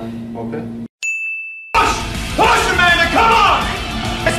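Music stops abruptly, and after a moment of silence a single bright ding rings out and dies away. Then a new, louder music track comes in with a voice singing over it.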